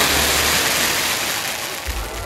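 Daytime show pyrotechnics firing beside the castle: a loud, rushing hiss that fades away over the two seconds.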